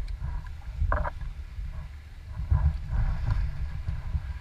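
Small waves lapping and slapping against a kayak's hull as it moves through light chop, heard as a low irregular thumping rumble with brief splashes about a second in and again near three seconds.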